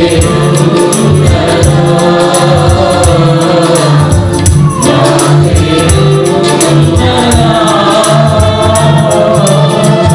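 Mixed choir of men and women singing a Telugu Christian worship song into microphones, with a tambourine shaken in a steady beat.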